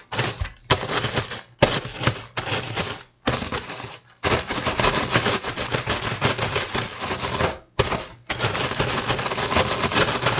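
Wooden rolling pin rolled hard over a sealed zip-top plastic bag of graham crackers and vanilla wafers, the cookies crackling and crunching into crumbs as the bag crinkles. It comes in runs of rapid crackling with a few brief pauses between strokes.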